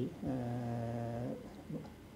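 A man's drawn-out hesitation filler "uhh", held at one steady pitch for about a second before trailing off.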